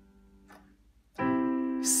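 A chord on a digital piano: the previous chord dies away very quietly, then about a second in a new chord is struck and held, a C major triad (C–E–G), the I chord of a I–vi–ii–V progression in C.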